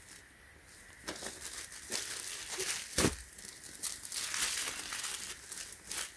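Clear plastic poly bag crinkling and crackling as a folded T-shirt is handled and unfolded on it. It starts about a second in, with irregular sharp crackles, the loudest about three seconds in.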